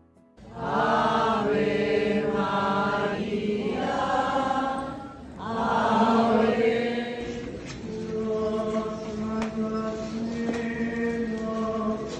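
Voices singing a slow chant together, with long held notes. It pauses briefly about five seconds in, and from about seven seconds it carries on somewhat quieter, with scattered faint clicks.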